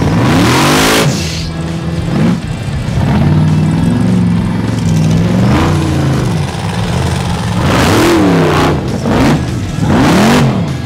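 Rock bouncer buggy engine revving hard in snow, its pitch sweeping up and down several times. Short loud bursts of rushing noise come at the start, around eight seconds in, and at the end.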